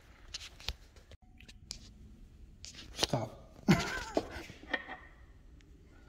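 A few light clicks and taps of hand tools and small metal parts handled on a wooden workbench, mostly in the first couple of seconds, with a brief low voice a little past the middle.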